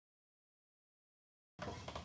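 Complete silence, then about one and a half seconds in the recording starts with faint room noise, a low hum and a small click.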